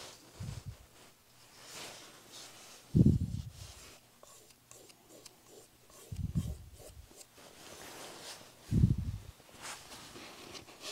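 Fingers rubbing and smoothing a wet water-slide decal film down onto a gessoed wooden cradled panel, a soft rubbing sound, with four dull low thumps spaced a few seconds apart as the panel is pressed or handled on the table.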